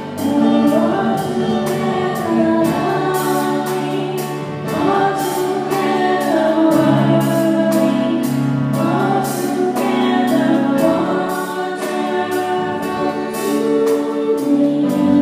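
Two girls singing a duet over musical accompaniment with a steady beat.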